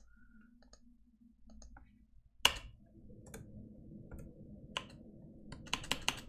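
Scattered clicks from a computer keyboard and mouse, with one sharp, louder click about two and a half seconds in and a quick cluster near the end. A faint steady hum comes in about three seconds in.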